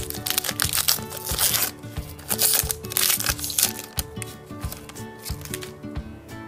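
Foil booster-pack wrapper being torn open and crinkled by hand in a run of rustling bursts over the first three or four seconds, thinning out after that. Background music plays throughout.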